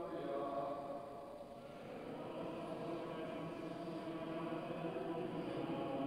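Quiet, sustained church music: held tones that shift slowly, dipping briefly about a second or two in.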